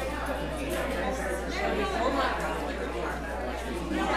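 Several people talking at once in a church sanctuary, their voices overlapping, over a steady low hum.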